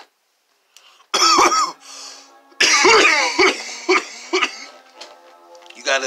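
A man coughing and clearing his throat in loud bouts, starting about a second in after a moment of silence, with the longest bout around the middle. Faint music runs underneath.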